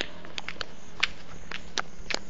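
Footsteps on a stone garden path: a few short, irregular clicks and scuffs over a steady hiss, the sharpest right at the start and about a second in.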